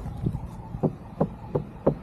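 A large hollow metal disc on a stand knocked with the hand five times in quick succession, each a short hollow knock with a brief ring.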